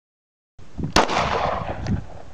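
A single semi-automatic pistol shot about a second in, a sharp loud crack followed by a short smear of echo.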